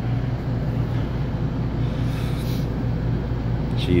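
Steady low machine hum, with a faint brief hiss a little past the middle.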